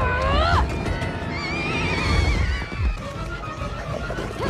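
Animated film soundtrack: orchestral score under action sound effects. A character's rising, straining cry is heard in the first half-second, and a wavering high tone runs through the middle.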